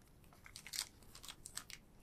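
Faint crinkling and light clicks of small items being pressed and packed into a small metal tin.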